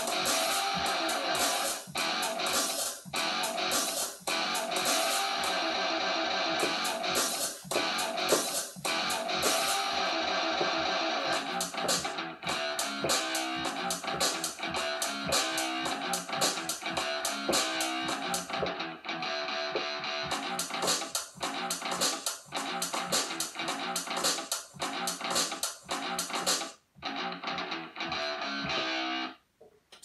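Electronic beat played live by tapping pads in the Drum Pads 24 app on a tablet: guitar-like loops layered over drum samples in a steady rhythm. It breaks off briefly near the end, then stops just before speech resumes.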